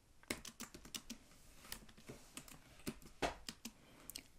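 Computer keyboard being typed: faint, irregular key clicks, a few strokes at a time, with a slightly louder keystroke about three seconds in.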